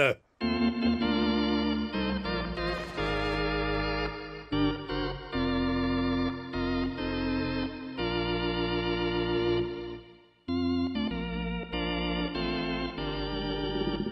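Stadium organ playing the national anthem in slow, sustained chords with a slight wavering vibrato, broken by a brief pause about ten seconds in.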